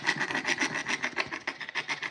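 A man's breathy, almost voiceless laughter: a fast run of short airy pulses.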